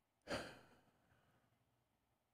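A man's short sigh, one quick breath out that starts suddenly about a quarter second in and fades over half a second.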